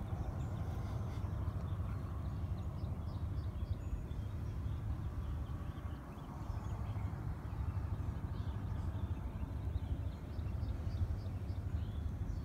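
Outdoor dawn ambience: a steady low rumble, with faint, scattered high bird chirps over it.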